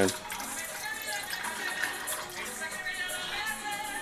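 Water pouring from a glass measuring cup into a small metal saucepan of cinnamon sticks, over faint background music with singing.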